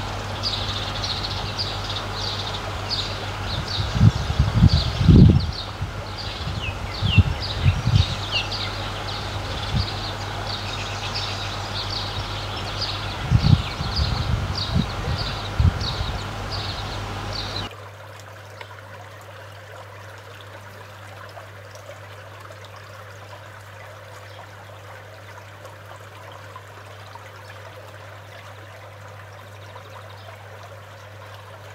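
Rapid high chirping of birds over a steady outdoor background, with a few low gusts of wind buffeting the microphone. About two-thirds of the way in, this cuts off and gives way to a quieter, steady trickle of a shallow stream.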